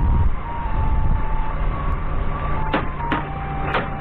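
Doosan 4.5-tonne forklift's engine running as it moves with a heavy load raised on its forks, louder in the first second, with an electronic warning tone stepping between pitches like a short melody. A few sharp clunks sound near the end.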